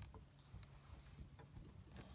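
Near silence: a low steady room hum with a few faint clicks.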